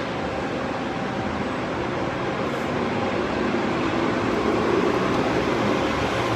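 Steady vehicle and traffic noise, an engine running nearby, recorded on a phone at a valet parking stand.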